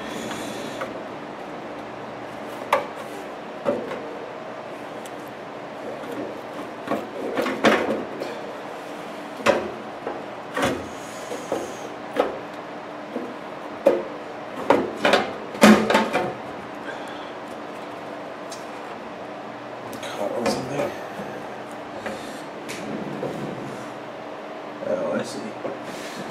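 Sheet-metal cover of a vintage all-metal transistor amplifier being worked loose and slid off its chassis by hand: irregular clicks, knocks and short scrapes of metal on metal, busiest through the middle and thinning out toward the end.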